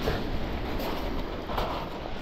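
Steady rumbling wash of surf on a shingle beach, with a few faint ticks of handling or stones.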